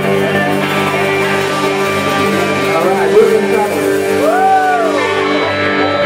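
Live rock band playing, with electric guitars and bass holding sustained chords. About four seconds in, a pitch slides up and back down over them.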